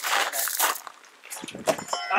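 Two throwing axes hurled two-handed at a wooden target: a forceful breathy exhale with the throw, then the axes knock into the wood about a second and a half in.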